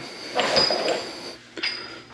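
Metal footpeg extender brackets and a hex key clinking and rattling as they are picked up off a workbench. There is a longer clatter with a high metallic ring, then a second short clink.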